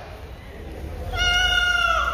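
A high, drawn-out cat-like squeal, starting about a second in and holding a steady pitch for nearly a second before dipping slightly at the end.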